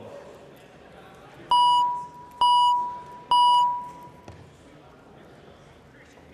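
Three identical electronic chime tones about a second apart, each starting sharply and fading away: the House chamber's signal that a roll-call vote is open.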